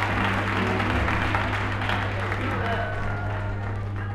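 A vinyl record of a live church gospel recording playing: congregation applause and cheering in the first half, thinning out as held instrumental chords come in about halfway. A steady low hum runs underneath.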